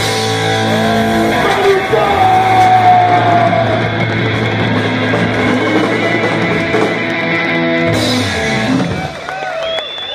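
Live rock band playing loudly, with distorted electric guitar chords, drums and a singer. The music drops in level and thins out near the end.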